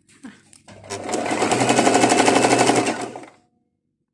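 Electric domestic sewing machine stitching a hem in fabric: it starts about a second in, runs at a steady fast rate of needle strokes for about two and a half seconds, then stops.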